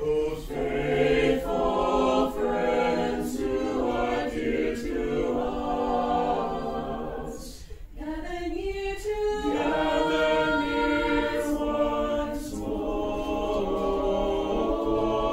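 Mixed chamber choir of men's and women's voices singing a cappella in harmony, with a brief break between phrases a little past halfway.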